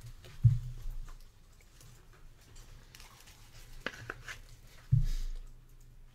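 A trading card being slid into a rigid plastic toploader: faint scratchy clicks and rustles, with two low thumps, one about half a second in and one near the end.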